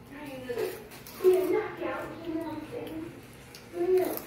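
Indistinct voices talking, including a child's.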